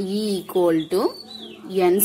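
Only speech: a voice talking, in drawn-out, gliding syllables, with a short lull in the middle.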